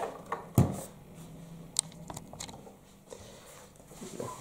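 Cardboard packaging being handled: a solid thump about half a second in, as of the box being set down, then a few light clicks and rustles.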